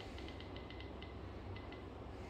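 Vsmart Active 3 Android phone giving its touch-feedback clicks as its screen is tapped: a quick, uneven run of short, high clicks in the first second, then two or three more a little later. The clicks are faint.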